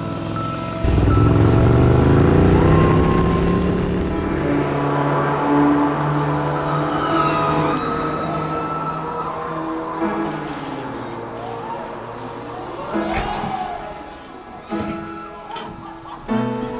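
A 1974 Ducati 750 SS's air-cooled bevel-drive L-twin starts pulling away about a second in, rising in pitch as it accelerates, then runs on steadily and fades, all under background music.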